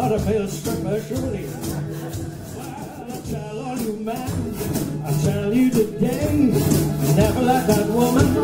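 Live jug band music: strummed mandolin and guitar over a blown jug, with a washboard keeping a fast, even scraping rhythm. The playing drops quieter for a couple of seconds in the middle, then builds back up.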